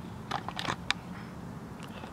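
A few faint, short clicks and taps over low steady room noise, like handling noise from a hand-held camera and the parts being filmed.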